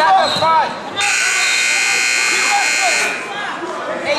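Electric scoreboard buzzer sounding one steady, loud blast for about two seconds, starting about a second in, amid shouting spectators.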